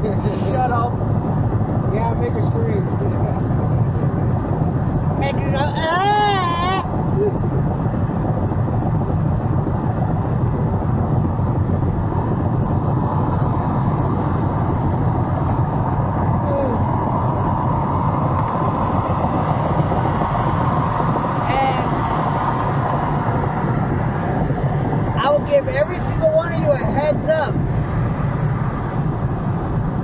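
Steady road and engine noise inside a car cruising on a freeway at about 65 to 70 mph. A brief bit of voice comes about six seconds in, and more voice near the end.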